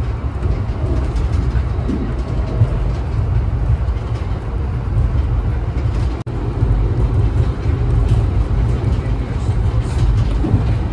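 Steady low rumble of an Amtrak passenger train in motion, heard from inside the passenger car. The sound cuts out for an instant about six seconds in.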